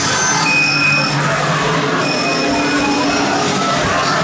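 Chainsaw running loud and close, with steady high screeching tones that hold for about half a second, break, then hold again for about a second and a half.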